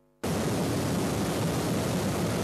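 Muddy floodwater rushing down a riverbed, a steady, even rush of water that cuts in just after the start.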